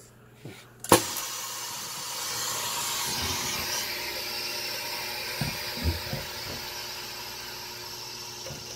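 Pneumatic rosin press starting its press: a sharp click about a second in as the start button opens the air valve, then a steady hiss of compressed air driving the cylinder as the heated plates close, easing slowly.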